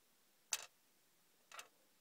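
Two light clicks about a second apart, the first louder: small plastic toy soldier figures set down on a hard plastic surface.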